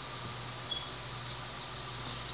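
A steady low hum with light hiss, the background noise of a small room, like a computer or other fan running. A brief faint high tone sounds once, under a second in.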